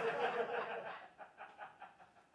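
Laughter that breaks out strongly and then tapers off into a few short chuckles near the end.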